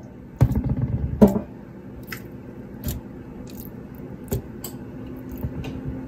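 Raw seasoned chicken drumsticks being set down by hand on the ribbed metal grill plate of an air fryer basket: a cluster of soft wet squishes and knocks in the first second or so, then scattered light clicks. A steady low hum from the running air fryer sits underneath.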